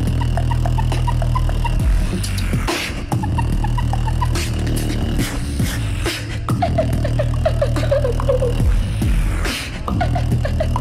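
Live beatboxing by two performers through microphones over a PA: a sustained deep bass hum runs under sharp snare and hi-hat clicks. A run of short, high vocal notes steps down in pitch about seven to eight and a half seconds in.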